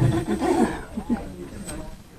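A short burst of laughter from people in a room, loudest in the first second, with a couple of short bursts just after, then dying away.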